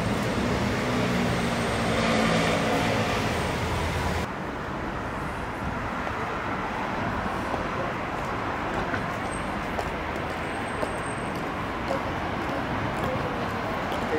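Street traffic: a car engine running close by for the first few seconds, then the sound changes abruptly to a steady wash of city traffic noise.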